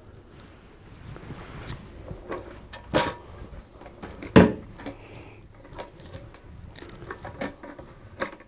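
Plastic carpet sweeper being handled and turned over: scattered light clicks and rattles, with two sharper knocks about three and four and a half seconds in.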